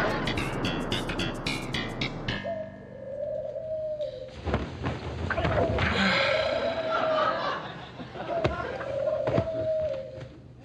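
Studio-audience laughter and a short plucked music sting in the first couple of seconds. Then doves cooing, several low wavering coos in a row.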